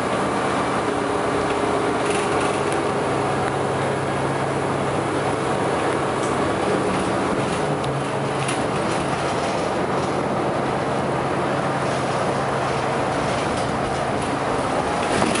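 Sunwin city bus heard from inside the passenger cabin while driving: steady engine drone and road noise, with a few light rattles.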